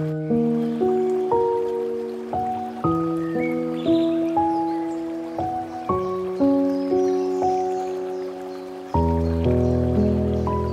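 Slow, gentle solo piano music: single notes and soft chords struck one after another and left to ring out and fade, with a deeper low chord entering near the end.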